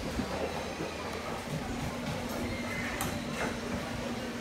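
Busy market eatery ambience: indistinct background chatter of diners with a steady low hum and a sharp click about three seconds in.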